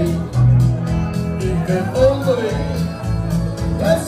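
A man singing live into a microphone over a backing track with a pulsing bass line, with a group of voices singing along.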